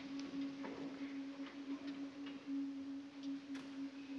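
A choir holding one soft, steady unison note, a plain held tone, with scattered small clicks and rustles from the hall.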